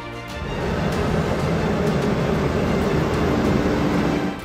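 CLAAS Axion tractor pulling a Lemken Azurit 10 eight-row planter past at close range, a loud noisy rush of engine and working noise that sets in about half a second in and breaks off right at the end, with a steady hum growing in the last second.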